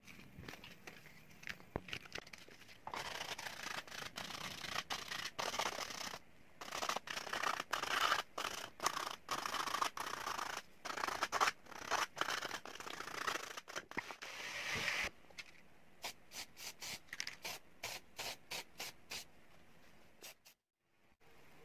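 Hand-sanding a plastic telephone part: rapid scratchy rubbing strokes, dense through the middle, then separate short strokes near the end.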